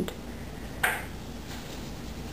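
Scissors snipping through yarn once, a single short sharp snip about a second in, over a low steady hum.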